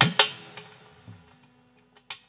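A musical accompaniment breaking off: a last couple of drum strokes right at the start, then held instrument notes ringing on and fading away to near silence.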